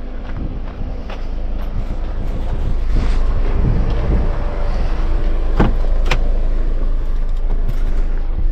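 A Jeep Wrangler's engine running steadily close by, growing louder about three seconds in, with two sharp clicks about a second and a half before the end.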